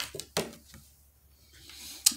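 An oracle card being handled and lifted to show: a few small clicks and one sharp tap about a third of a second in, then faint rustling that rises near the end.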